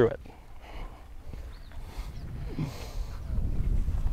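Wind rumbling on the microphone: a low, gusty rumble that grows louder toward the end.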